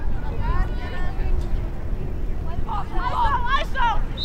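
Voices shouting across an open lacrosse field, faint at first and louder about three seconds in, over a steady low rumble.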